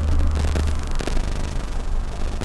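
Road noise inside a moving car: a steady low rumble of tyres and engine.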